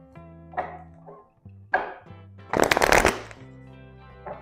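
Tarot cards being shuffled by hand: two brief rustles, then a longer, louder riffle about two and a half seconds in. Soft background music with held notes plays under it.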